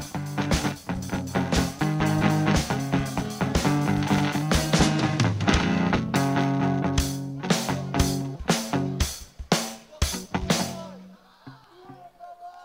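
Live rock band playing on stage: electric guitar with a drum kit. In the second half, the drums hit about three times a second over held guitar notes, and the music stops about eleven seconds in.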